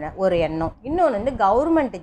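Speech only: a woman speaking Tamil.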